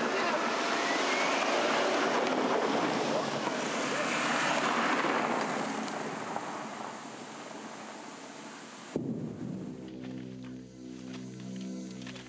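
Mercedes sedan driving along a gravel track, its tyres crunching in a loud, steady rush that swells and then fades as it passes. About nine seconds in it cuts off suddenly, replaced by eerie background music with low held notes and light ticks.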